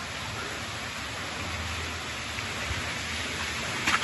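Steady, even rush of water in a narrow rock gorge, with a faint click near the end.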